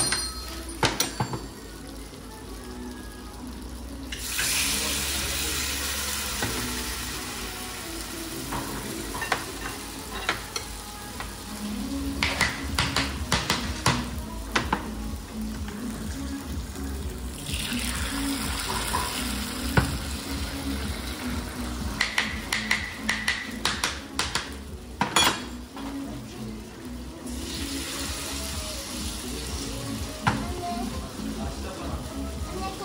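Hot pottery kebab stew being tipped from small clay jugs into hot stone bowls, sizzling in three stretches of a few seconds each, with clinks and knocks of pottery on plates and trays between them. Music plays faintly underneath.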